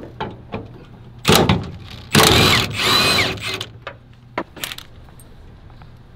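Cordless drill running in two bursts: a short one just over a second in and a longer one about two seconds in, with its pitch rising and falling as the trigger is worked. Small clicks and rattles come before and after.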